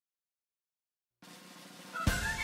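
Silence, then a little over a second in a faint sound swells up and grows louder: the start of a cartoon's opening logo sting leading into its theme music.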